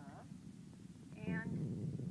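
A cat meowing twice: a short meow at the very start and a louder, longer one about a second in, over faint rustling.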